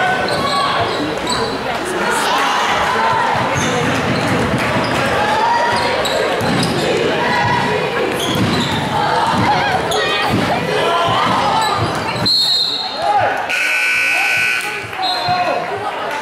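Gymnasium game noise: crowd voices echoing in the hall and a basketball bouncing during play. About twelve seconds in a referee's whistle blows briefly, then the scoreboard buzzer sounds for about a second.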